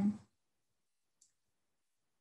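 The tail of a woman's spoken "Amen", then dead silence, broken only by one faint, very short high click about a second and a quarter in.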